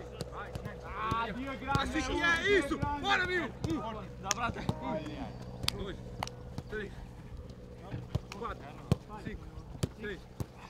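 A football being kicked in quick passes on a grass pitch: a string of short, sharp thuds, one or two a second, with men shouting over the first few seconds.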